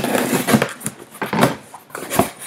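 A cardboard shipping box being cut open along its packing tape with a box cutter, then its flaps pulled apart. It makes a few rough scraping and tearing strokes.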